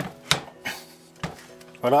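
A few short clicks and knocks from a Bosch POF 1400 ACE plunge router, motor off, as its body is pushed down on the plunge columns and handled.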